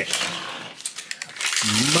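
Crinkling of a foil-wrapped plastic toy ball's wrapper, with light plastic clicks, as the ball is handled and its sticker seal is peeled back. A voice begins near the end.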